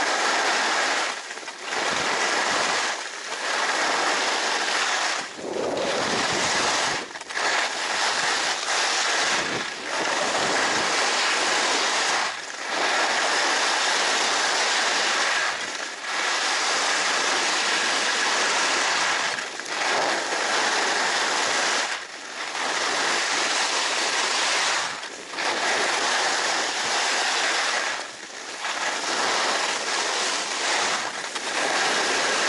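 Skis carving on firm groomed snow, mixed with wind on the microphone: a steady, loud hiss and scrape that drops away briefly every few seconds as the skier comes out of one turn and into the next.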